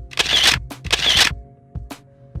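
Two camera shutter sound effects in quick succession, over background music with a steady beat.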